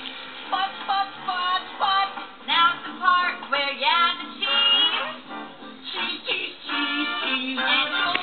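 A song from a children's TV show: sung voices over music, played from a television.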